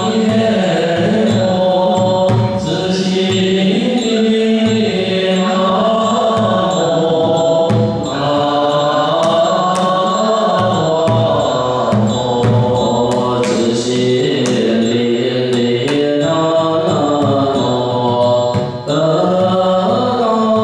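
Buddhist monastics chanting a slow melodic liturgy in unison, the sung lines held and gliding between pitches, accompanied by short strikes on a temple drum played with a wooden mallet and a stick.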